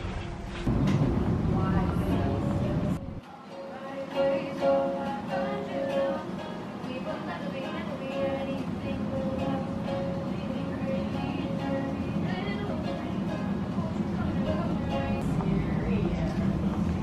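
Teenage girls singing while a ukulele is strummed. For about the first three seconds a low rumble covers it, then it cuts off and the held sung notes come through clearly.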